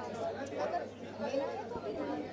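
Indistinct chatter: several people talking at once, no single voice clear.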